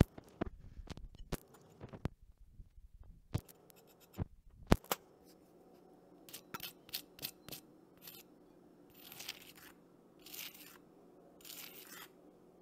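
A few sharp knocks on the cutting board, then a small metal spoon clicking and scraping against a ceramic plate in short strokes while the finished salmon dish is sauced and garnished.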